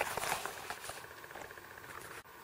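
Handling noise from a zippered fabric sunglasses case: faint rustling and scattered light taps as it is turned over and opened, thinning out after about a second.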